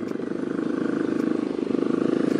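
Several motor scooters with small single-cylinder engines running as they ride up close over a dirt road, a steady engine drone with a rapid pulse that grows slightly louder as the nearest scooter approaches.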